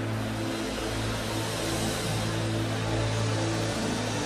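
Low, sustained keyboard chord held steady as background worship music, over a faint even wash of the congregation praying aloud.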